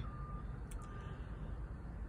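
Faint electronic beeping: one steady tone, each beep just under half a second long and repeating a little faster than once a second, stopping just over a second in. A low steady rumble runs underneath, with a small click near the middle.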